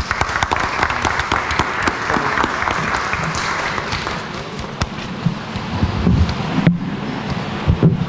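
Audience applauding, the clapping fading away over the first few seconds. It is followed by low thumps and rustling as a table microphone is handled and moved on its stand.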